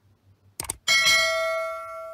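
Subscribe-animation sound effect: a quick double click just over half a second in, then a bright bell ding that rings out and fades over about a second and a half, the cue for the notification bell being switched on.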